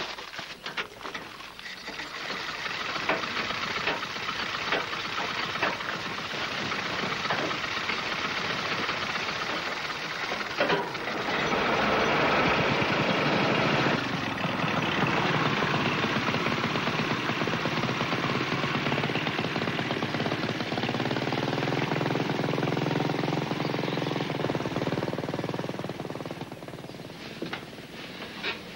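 Vintage car and motorcycle engines being started and running, growing louder about eleven seconds in, then fading near the end as the car drives away.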